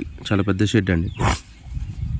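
A man speaking, with a short pause in the second half.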